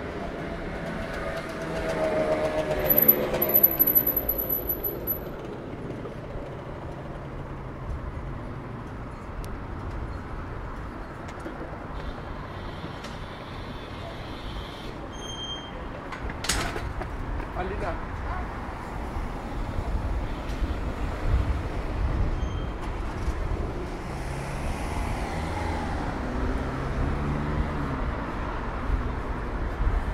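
City street traffic: a steady rumble of cars and trucks driving past, with one vehicle passing loudly about three seconds in and a heavier low rumble building in the last third.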